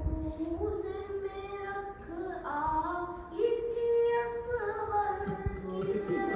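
A child singing an Urdu noha, a mourning lament, solo in long held notes that step up and down in pitch, with short breaks between phrases.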